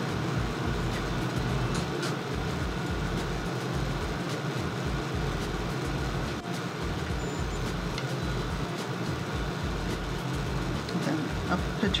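Steady low rumbling background noise with a faint hiss, with a few faint light clicks.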